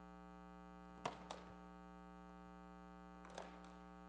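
Steady electrical mains hum through the sound system, with a short sharp noise about a second in and a fainter one near the end.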